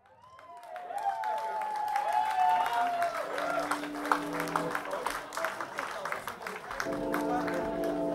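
A live rock band's opening fades in from silence: wavering, gliding tones for the first few seconds over a crowd's applause. A held chord comes in about three seconds in and swells again near the end.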